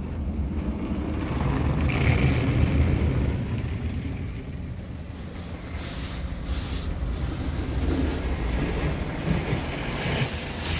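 Water jets of a PDQ ProTouch Tandem touchless car wash spraying foam and water over the car's body and windows, heard from inside the cabin as a low, rumbling rush of spray. It swells about two seconds in and again near the end as the jets pass over.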